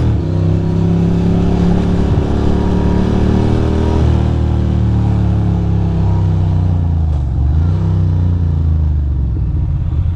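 2006 Ducati Monster 620's air-cooled L-twin engine running at steady road speed under the rider. Its note shifts slightly about four seconds in, then dips and picks up again around seven seconds in.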